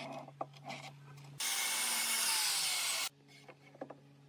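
Ryobi sliding miter saw cutting through a wooden board: a loud burst of about a second and a half midway through, its whine falling in pitch. Light knocks from handling the board come before and after it.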